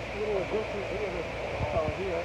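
Indistinct voices of people talking, with a few soft low knocks near the end.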